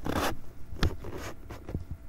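A brief scraping rustle close to the microphone, then a sharp click a little under a second in and two fainter clicks near the end.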